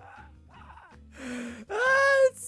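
A man laughing helplessly: faint, breathy wheezing at first, then rising to a loud, high-pitched squealing laugh held for about half a second near the end.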